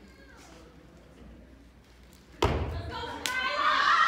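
A step team's stomp on a wooden stage: a pause, then a single loud stomp about two and a half seconds in, followed by two sharp smacks and a performer starting to shout the next chant, all echoing in a large hall.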